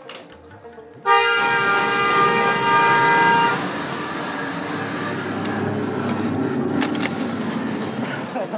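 A loud, steady horn blast of several tones at once starts suddenly about a second in and lasts about two and a half seconds. It is followed by a continuous noisy rush with a few sharp clicks near the end.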